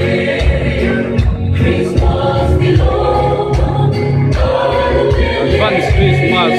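Choir singing gospel-style Christian music with instrumental accompaniment and a steady percussion beat.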